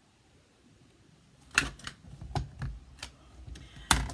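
Hard plastic clicks and taps from stamping tools being handled: quiet for the first second and a half, then one sharp click, a few lighter taps, and another sharp click near the end.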